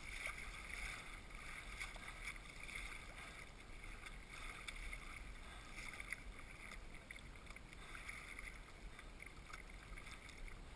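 Water washing and splashing against a sea kayak's hull as it is paddled through choppy sea, swelling every second or two.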